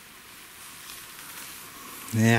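Faint, steady hiss of outdoor background noise in a forest, with no distinct events.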